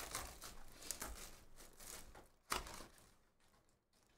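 Cellophane shrink wrap being peeled off a cardboard trading-card box and the box flap pulled open: soft crinkling and scraping, then one brief louder tear about two and a half seconds in.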